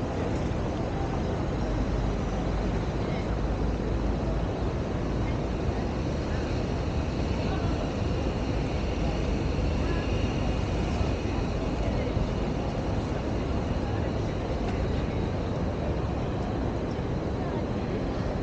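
Outdoor city ambience: a steady background rumble with indistinct voices of passers-by.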